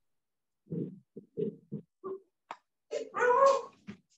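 Small children's voices coming through a participant's unmuted microphone on a video call: a string of short, soft sounds over the first two seconds, then a louder high-pitched cry about three seconds in.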